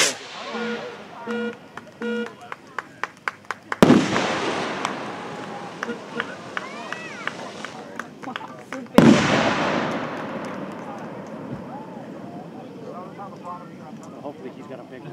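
Amateur-built pyrotechnic rockets bursting in the sky. A quick run of small crackling pops comes first, then a sharp bang about four seconds in and another about nine seconds in, each trailing off in a long rolling echo. A few short beeps sound in the first two seconds.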